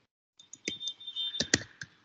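Computer keyboard keys being typed: a short run of about six or seven separate key clicks.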